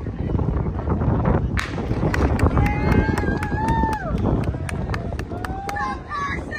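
A starting pistol cracks about a second and a half in to start a 400 m race, followed by spectators' long drawn-out shouts and rhythmic clapping, about four claps a second, over a steady low rumble of wind on the microphone.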